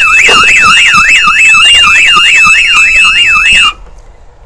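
Citroën Dispatch van's alarm siren sounding, set off by opening the armed van's rear doors. It is loud, a rapid up-and-down sweep at about four cycles a second with a steady high tone over it, and it cuts off suddenly near the end.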